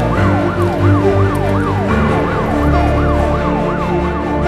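Emergency vehicle siren sweeping rapidly up and down in pitch, about three or four times a second, in a yelp pattern.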